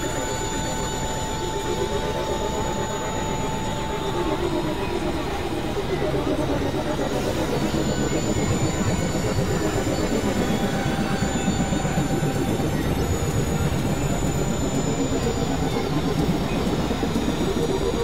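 Experimental synthesizer drone-noise music: a dense, grinding texture with slow sweeping pitch glides in the low and middle range, rising and falling, under thin steady high whistling tones.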